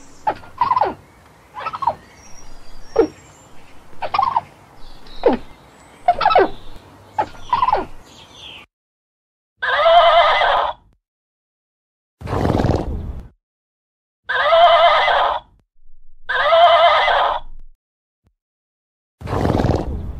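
For the first eight seconds, a gray squirrel gives short sweeping calls about one a second. Then, after a pause, a horse whinnies three times with a wavering pitch, with two lower, breathy snorts in between and near the end.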